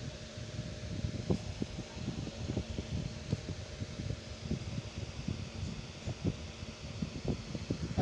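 Low, uneven rumble of moving air buffeting the microphone, with a faint steady hum underneath.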